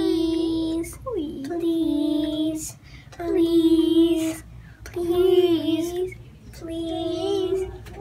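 A young girl singing a tune in five long held notes, each about a second, with short breaths between them.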